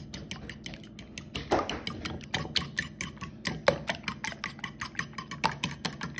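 A metal fork whisking eggs and milk in a ceramic bowl, its tines clicking quickly and steadily against the bowl, several clicks a second.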